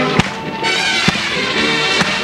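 Drum and bugle corps playing: sustained brass chords with sharp drum hits, a loud one about a quarter second in and another about a second in, recorded from the stadium stands.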